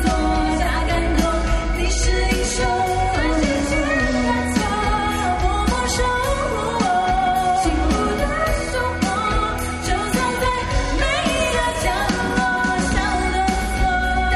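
Live pop band playing: two female vocalists singing over electric bass, keyboard and a drum kit keeping a steady beat.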